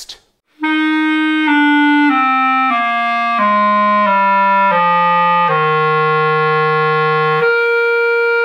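Buffet Legend B-flat clarinet playing a descending F major scale, eight stepwise notes down to a held low F, the note clarinets traditionally play flat. A steady higher tone carries on after the scale stops near the end.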